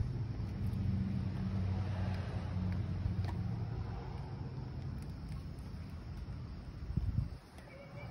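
Pontiac 455 big-block V8 idling steadily with a low, even hum. A brief low thump near the end.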